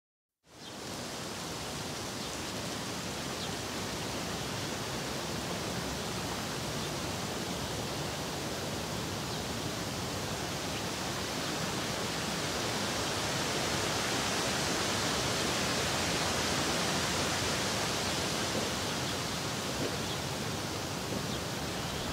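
Steady rushing ambient noise that fades in about half a second in and swells slightly midway, with no distinct events.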